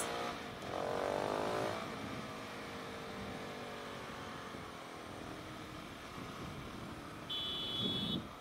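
Single-cylinder engine of a Husqvarna 701 supermoto with a Remus aftermarket exhaust, heard while riding over a steady haze of wind and road noise. Its note is strongest about a second in, then slowly falls as the bike slows. A short high steady tone sounds near the end.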